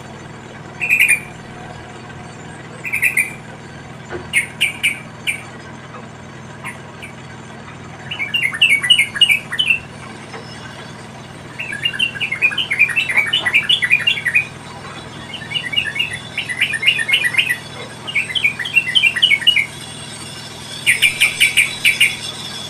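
Sooty-headed bulbul chirping at the nest: a few short, separate chirps at first, then from about eight seconds in, quick runs of chirps that each last a second or two, with short pauses between.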